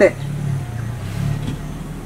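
A low rumble of a vehicle engine, fading about a second and a half in.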